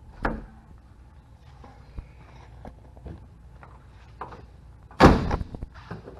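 Sharp click of a Toyota Land Cruiser Prado's rear side-window latch being worked by hand just after the start, a few light handling ticks, then one loud door slam about five seconds in.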